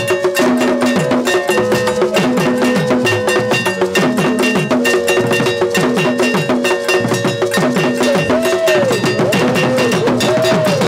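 Ghanaian drum ensemble: boat-shaped iron bells struck in a rapid, continuous pattern over stick-played barrel drums, with held low notes sliding downward through the mix.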